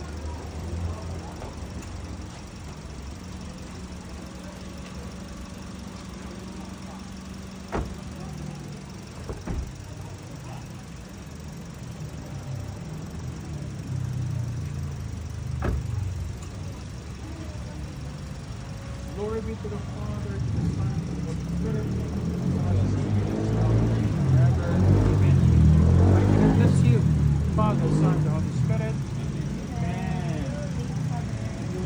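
Low, steady rumble of a car engine idling, with three sharp knocks in the first half. In the last third, several people's voices talking grow louder.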